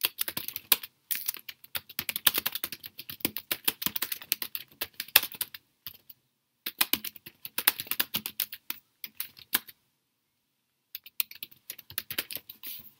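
Typing on a computer keyboard: quick runs of key clicks, with a short break about six seconds in and a longer one about ten seconds in.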